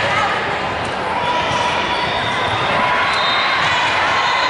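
Steady din of a large indoor volleyball hall: many voices talking and calling, with volleyballs bouncing on the hardwood courts.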